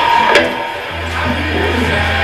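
Electric guitar played live through a Marshall amplifier, with a steady low amplifier hum underneath and one sharp click.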